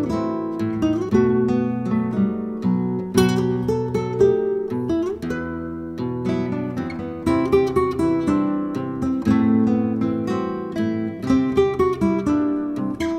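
Instrumental acoustic guitar music: plucked and strummed notes ringing one after another, without singing.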